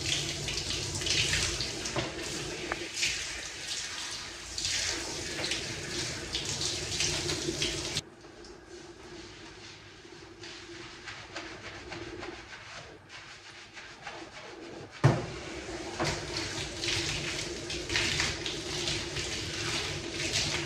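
Water spraying from a handheld shower head onto hair over a bathtub, rinsing out a hair treatment with warm water. The spray stops for several seconds in the middle and starts again with a short thump.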